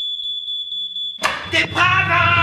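A smoke alarm sounding one steady high-pitched tone, cut across about a second in by a person yelling in panic.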